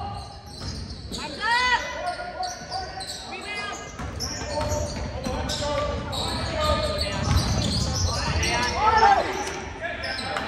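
Basketball game play in a gymnasium: a ball dribbling and sneakers squeaking in short high squeals on the hardwood court a few times, under indistinct voices from players and spectators, all echoing in the hall.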